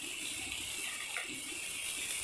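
Sliced onions and ground spices sizzling in hot oil in a steel kadai as they are stirred, a steady hiss.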